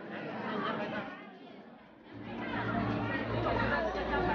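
Indistinct chatter of several people talking, quieter in the first half and growing louder from about halfway.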